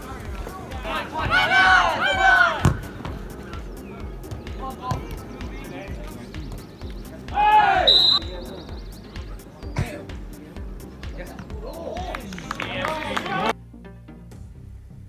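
Football players and sideline spectators shouting in loud bursts, three times, with scattered thuds of the ball being kicked. The sound cuts off abruptly near the end.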